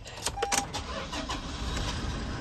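The 2019 Toyota HiAce's 2.8-litre diesel being started: a few clicks and a short single beep about half a second in, with a low engine rumble underneath.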